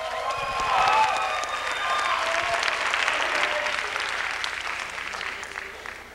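Audience applauding in a school auditorium, with a few voices calling out over it near the start; the clapping dies down toward the end.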